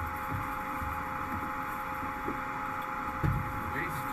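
Steady hum of a Blue Origin New Shepard crew capsule cabin: an even hiss with two faint steady tones and a low rumble beneath. A soft thump comes about three seconds in.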